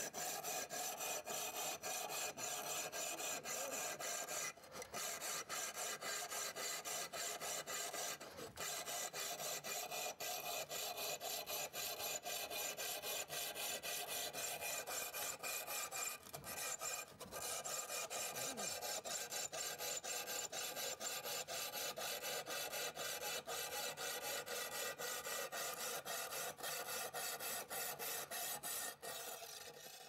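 Titanium-carbide grit rod saw in a hacksaw frame sawing through a ceramic tile in quick, even back-and-forth strokes, cutting on both the push and the pull while following a curved line. The strokes pause briefly about four and eight seconds in and again around sixteen seconds, then stop near the end.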